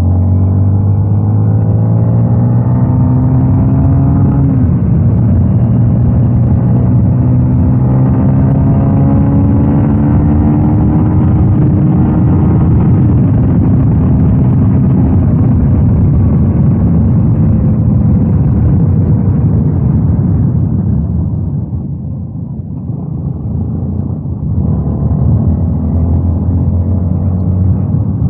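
Yamaha Y16ZR's single-cylinder engine under hard acceleration, its note climbing through the gears with upshifts about four and thirteen seconds in. It eases off for a few seconds about two-thirds of the way through, then pulls again.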